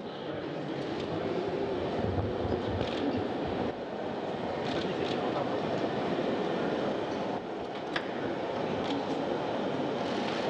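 Steady whirring airflow from the portable ventilator fans of Sokol spacesuits running. A few light knocks come from boots and equipment on the stairs.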